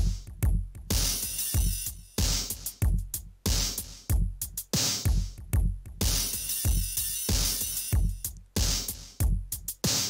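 Programmed electronic drum loop playing back from Bitwig Studio's clip launcher at 94 BPM: kick, snare, and closed and open hi-hat samples in a steady repeating pattern. The clips are of different lengths and loop against one another, giving a syncopated groove.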